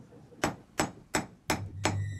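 Blacksmith's hand hammer striking hot iron on an anvil: five even, ringing blows, about three a second, starting about half a second in.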